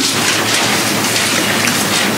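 A steady, even hiss that fills the whole sound, with no speech over it.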